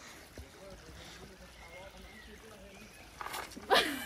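Quiet, with a faint trickle of a small stream; near the end, shoes squelching and sliding in wet mud as a woman slips on the steep path, with a short startled cry.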